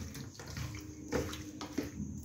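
A hand squelching raw chicken pieces through a wet marinade in a stainless steel bowl, in a few irregular wet squishes as it mixes in freshly added lemon juice.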